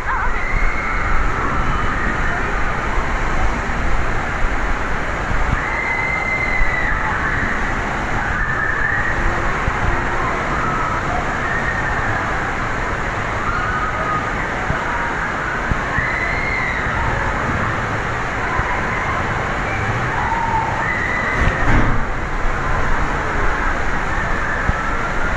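Steady rushing water-park ambience, with faint distant voices rising and falling over it now and then.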